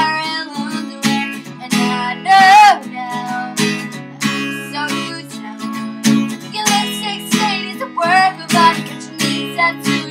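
Acoustic guitar strummed in a steady rhythm, with a woman singing a melody over it.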